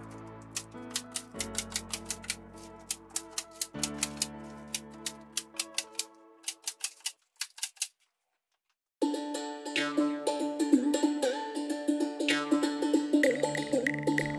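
Cordless staple gun firing repeatedly into a wooden frame: a quick run of sharp clicks, about two or three a second, over background music. The clicks stop about seven seconds in, and after a short silence only the music goes on.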